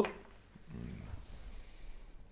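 A man's faint, brief low closed-mouth 'mmm' about a second in, a wordless hum as he weighs a sip of tequila.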